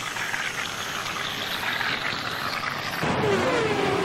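A motor vehicle engine running behind a steady hiss. About three seconds in it grows louder and its pitch falls.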